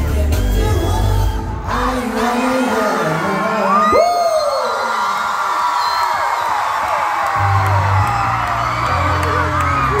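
Loud K-pop playing through a concert sound system. The bass drops out about two seconds in and comes back near the end, while the audience screams and cheers throughout.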